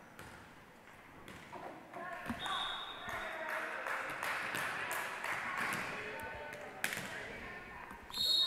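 Volleyball players and spectators talking in a large, echoing gymnasium, faint at first and rising after a second or so. A short, high whistle blast comes about two and a half seconds in, and a volleyball bounces a few times on the hardwood floor.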